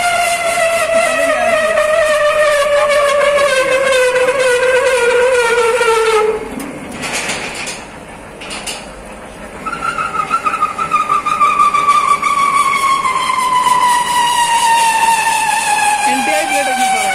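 Rebar threading machine with a die-head chaser cutting a thread on a TMT bar, giving a loud, high-pitched squeal that slides slowly down in pitch. About six seconds in it breaks off for a few seconds of quieter noise, then returns higher and falls slowly again.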